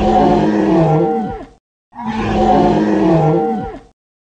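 A creature's roar sound effect, played twice as identical copies of about a second and a half each with a short gap between. Each roar's pitch sags toward its end.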